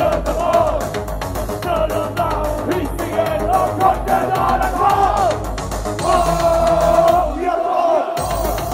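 Loud live electronic music: a steady bass-drum beat under a melody line, with a performer and crowd shouting along. The low beat drops out briefly near the end and then comes back.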